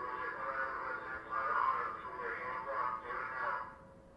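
Indistinct voices from a police body-worn camera's audio recording, played back over the room's speakers, stopping about three and a half seconds in.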